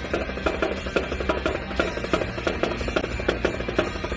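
Marching snare drums played by a small drum line in a quick, steady rhythmic cadence, over a low sustained tone.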